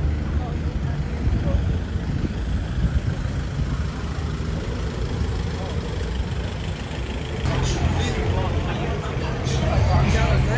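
Busy outdoor dining-street ambience: a steady low rumble under the chatter of people at the tables, the voices growing louder and closer near the end.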